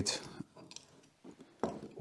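A few faint clicks and light knocks as a galvanised ring latch handle is picked up and set down on the timber gate rail. The sharpest click comes about one and a half seconds in.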